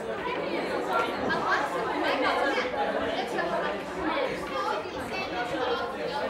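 Many overlapping voices of students chattering at once in a classroom, with no single voice standing out.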